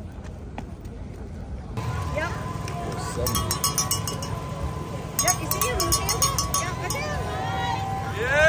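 Outdoor race-crowd ambience: scattered spectators' voices over a steady low rumble. Twice, for about a second each, there is a spell of rapid metallic clicking. It starts when the sound jumps louder, about two seconds in; before that it is quieter street ambience.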